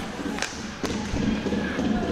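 Ice hockey game sound from the rink: two sharp knocks from stick-and-puck play, about half a second apart, over a low murmur of arena voices.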